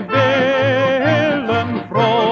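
Accordion orchestra playing a lively instrumental passage from a circa-1950 78 rpm record, with wavering sustained accordion notes over a bouncing bass beat about twice a second.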